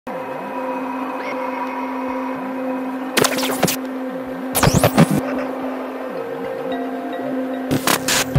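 Channel intro music: a steady electronic drone with sliding swept tones, cut by whoosh transition effects about three seconds in, around five seconds and at the very end.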